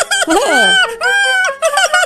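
Cartoon character vocal effects: a quick run of high-pitched, clucking, squawk-like chatter, with a brief falling whistle-like glide about half a second in.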